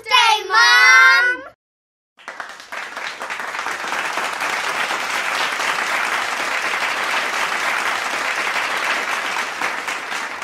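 Children's voices singing briefly, then after a short gap, about two seconds in, applause starts and runs on at a steady level.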